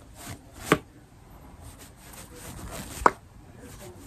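Fabric hair scrunchies handled close to the microphone as an ASMR trigger: a soft rustle with two sharp taps, one just under a second in and a louder one about three seconds in.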